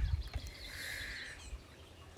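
Breeze rumbling on the microphone, fading after the first half-second, with a faint bird call lasting under a second in the middle.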